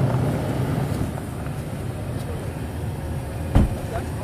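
An SUV's engine idling with a steady low hum, and a single sharp thump about three and a half seconds in.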